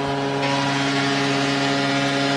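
Arena goal horn sounding one long steady note after a home-team goal, with the crowd cheering; the cheering swells about half a second in.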